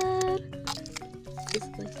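Background music with held notes that change pitch every half-second or so over a steady low bass tone, after a drawn-out spoken word that ends in the first half-second.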